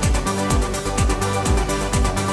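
Progressive house/trance track, fully electronic: a steady four-on-the-floor kick drum about twice a second, fast hi-hats above it, and held synth chords.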